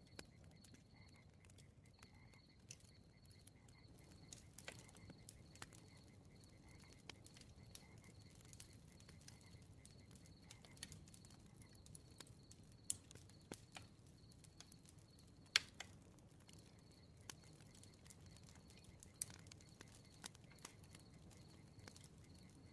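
Faint campfire crackling: sparse sharp pops and snaps, the loudest about 13 and 15 seconds in, over a low rumble. A faint, steady, high pulsing tone runs beneath it.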